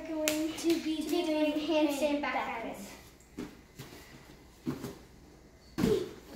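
A girl's voice held on a fairly level pitch for about two seconds, then several sharp slaps, the loudest near the end: hands and feet coming down on a vinyl-covered folding gymnastics mat.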